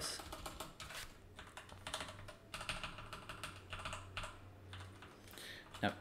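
Typing on a computer keyboard: runs of quick, irregular keystrokes with short pauses between them.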